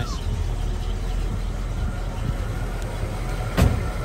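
Ford 289 V8 with a two-barrel carburetor idling steadily through a new dual exhaust. There is a single thump about three and a half seconds in.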